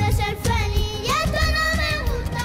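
Two young boys singing a Latin pop reggaeton song into microphones over backing music with a heavy, pulsing bass beat.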